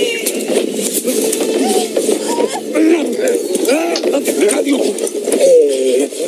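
Several men's wordless shouts and grunts in a scuffle, short strained cries one after another.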